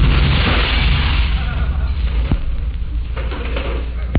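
Explosion sound effect from an old radio recording: the rumble of a blast that went off just before dies away slowly, with a few sharp crackles. It is the comic's home-made chemistry-set bomb going off.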